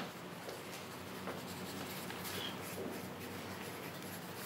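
Handwriting on a sheet of paper laid on a bed: faint, steady scratching of the pen tip across the page.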